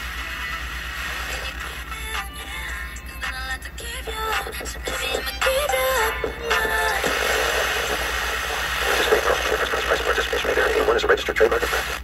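The speaker of a 5 Core portable AM/FM/shortwave radio as its FM dial is turned: hiss between stations, with snatches of music and singing coming and going as stations are tuned past.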